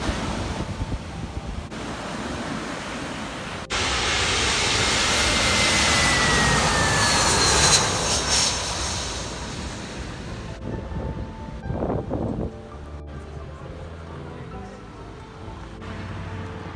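Jet airliner passing low and close, its engines running loud with a whine that slowly falls in pitch as it goes by. It starts abruptly about four seconds in and cuts off suddenly a few seconds later.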